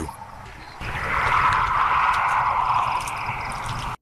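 A steady rushing, hiss-like noise over a low rumble. It grows louder about a second in and stops abruptly at the end.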